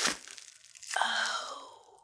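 Plastic bubble-wrap packaging crinkling and crunching as a small bottle is unwrapped. About a second in there is a sliding, squeaky sound that falls in pitch and fades out.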